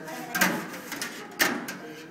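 Metal bubble-wand hoops knocking against the rim of a steel bubble tub: two sharp knocks about a second apart, the second the louder, followed by a lighter tap.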